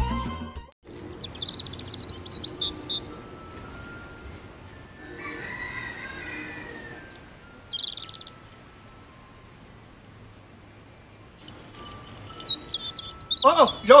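Small birds chirping in short bursts in a backyard garden, with a longer rooster crow in the middle. The first second holds the tail of a music jingle, which cuts off abruptly.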